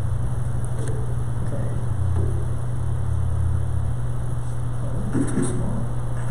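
A steady low hum runs throughout, with a few faint brief sounds about five seconds in.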